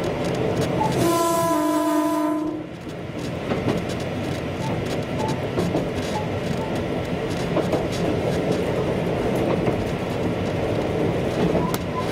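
Train running along the track with a steady rumble and rail clicks; a horn sounds about a second in and holds for about a second and a half.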